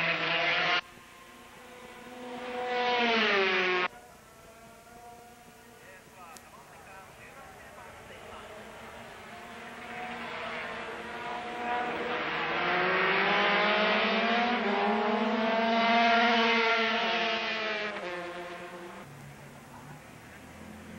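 Two-stroke 125cc GP racing motorcycles (Honda RS125 and Yamaha TZ125) at full throttle, passing in a group: a high, buzzing engine note that rises in pitch as they approach and falls as they go by, in several swells. The sound cuts off abruptly about a second in and again near four seconds, and the longest, loudest pass swells over several seconds in the second half.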